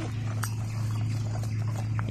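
Racing pigeons stirring in a crowded wire crate, with one faint click about half a second in, over a steady low hum.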